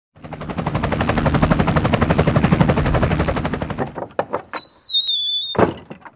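Intro sound effect: a fast rattling train of strokes, about a dozen a second, for roughly four seconds, then a few separate hits and a high ringing tone that slides slightly down, ending on a last hit.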